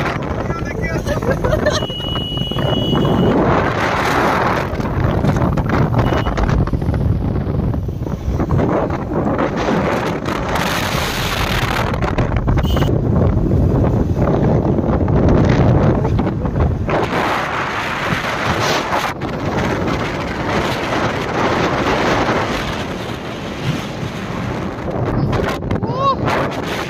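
Wind rushing over the microphone of a camera riding on a moving motorcycle, with the motorcycle engine running underneath.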